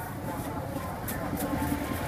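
Outdoor street ambience: a steady low rumble of passing traffic with indistinct voices in the background.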